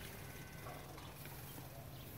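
Faint clopping of a Haflinger horse's hooves as it shifts its feet.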